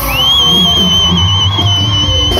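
Live band music with an electronic keyboard holding one long, high lead note that slides up into pitch at the start and wavers slightly, over a steady low bass.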